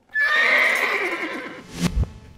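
A horse whinnying: one long neigh that falls in pitch over about a second and a half. A sharp thump follows near the end.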